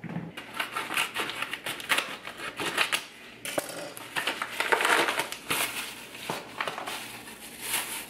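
Plastic mailer package and the plastic bag inside it crinkling and rustling as they are cut open and handled: a run of irregular crackles with a short lull about three and a half seconds in.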